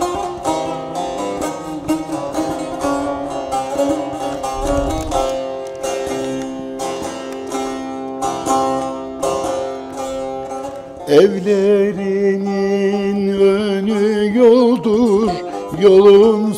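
Bağlama (long-necked Turkish saz) played solo with quick plucked notes as the introduction to a Turkish folk song (türkü). About eleven seconds in, a man's voice comes in with a long held sung note with vibrato over the saz.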